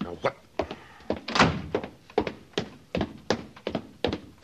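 Footsteps, a radio-drama sound effect: evenly paced steps at about three a second, with one louder step about a second and a half in.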